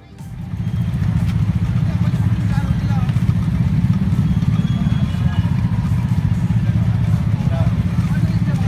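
Several motorcycle engines idling close by in stalled traffic, with people's voices chattering around them; the sound swells up about half a second in and then holds steady.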